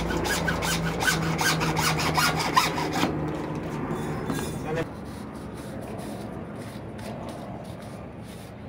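Hacksaw cutting through a PVC pipe in quick back-and-forth strokes, about four a second, until the cut finishes about three seconds in; after that only a lower, steady background is left.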